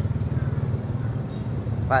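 Steady low rumble of street traffic.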